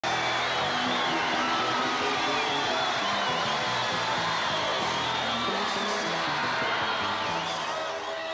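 Live rock band playing: electric guitar, bass and drums, with a wavering high lead line over a stepping bass line. The music eases down near the end.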